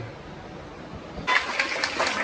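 A group of children clapping, starting a little over a second in with quick, uneven claps.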